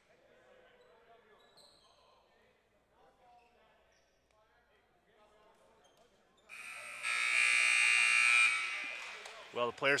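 A gym's electronic buzzer sounds for about two seconds, cutting in suddenly and then fading away, signalling the end of a volleyball timeout. Before it there is only faint hall background with distant voices.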